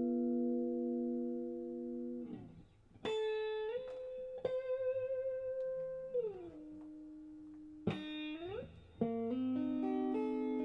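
Solo guitar played slowly with long ringing single notes. A held note dies away, then new notes are picked and bent or slid up and down in pitch with some vibrato, and near the end several notes come in quicker succession.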